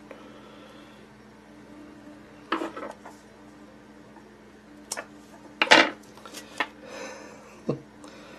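A few scattered metallic clinks and taps of small fly-tying tools and materials being handled at the bench, the loudest about two-thirds of the way through, over a steady low hum.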